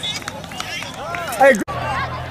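Sideline spectators, children and adults, talking and shouting over one another, with one loud falling shout about one and a half seconds in. The sound then cuts off abruptly, and a low steady hum runs under more voices.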